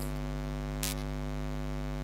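Steady electrical mains hum on the microphone feed, a low buzz with a stack of higher overtones, heard plainly in a pause in speech. A brief soft hiss sounds about halfway through.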